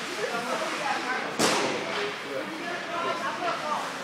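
Indistinct chatter of several people in a large room, with one sharp smack about a second and a half in.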